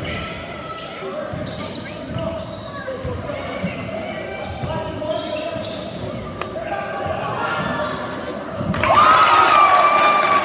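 A basketball being dribbled on a gym's hardwood floor over the steady chatter of spectators. About nine seconds in the crowd gets louder, with one long held call.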